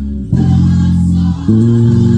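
Gospel music with a five-string electric bass playing held low notes under sustained chords. The chord changes about a third of a second in and again about a second and a half in.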